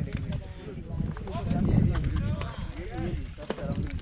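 Indistinct chatter of several overlapping voices over a steady low rumble, with scattered sharp clicks.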